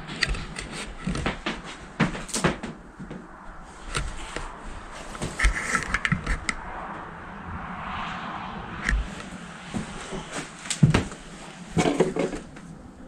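Footsteps and scuffs over a debris-strewn floor in a gutted room, heard as irregular clicks and knocks, with a louder knock or two near the end.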